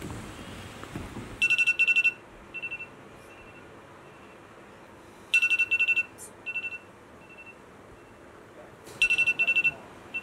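Electronic wake-up alarm beeping: three bursts of rapid high beeps about three and a half seconds apart, each trailing off into a few fainter, spaced beeps.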